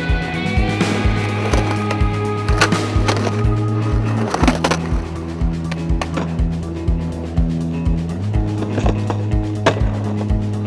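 Skateboard on concrete, wheels rolling with a few sharp clacks of the board, under a music track with a steady beat and bass line.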